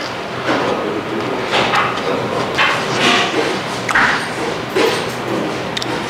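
A man chewing a crispy double-fried chip close to a clip-on microphone: irregular noisy chewing sounds about once a second.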